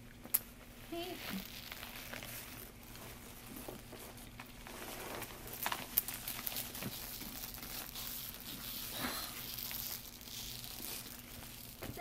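Faint rustling and crinkling of a cloth dust bag and tissue paper as a handbag is unwrapped and drawn out, with small crackles and a sharp click near the start.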